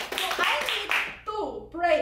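Hand clapping, a quick run of claps lasting about a second, then speech takes over.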